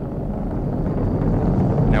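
Atlas V 411 rocket in powered ascent, its RD-180 main engine and single solid rocket booster firing: a steady low rumble that grows slightly louder toward the end.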